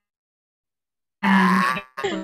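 A person's voice making one drawn-out 'uh' grunt at a steady pitch, starting about a second in.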